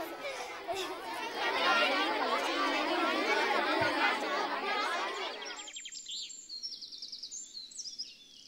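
A crowd of children chattering all at once, cutting off abruptly a little over five seconds in, followed by small birds chirping.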